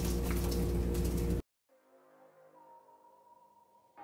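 Dried chiles sizzling in hot oil in a frying pan, under a steady low hum, until the sound cuts off abruptly about a second and a half in. Soft, sustained ambient music then fades in, quiet at first and louder near the end.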